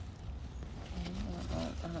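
Low, steady buzz of a flying insect, such as a fly or bee, with a few spoken words in the second half.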